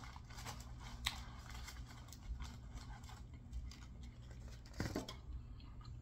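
Faint scraping and a few light clicks as fingers work sauce from the bottom of a plastic takeout box and handle a saucy chicken wing.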